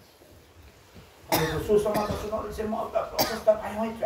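A man speaking, starting about a second in after a short pause.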